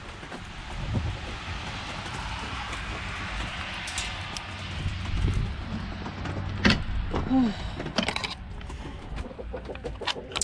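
Hens clucking in a henhouse over a steady hiss, with a few short knocks.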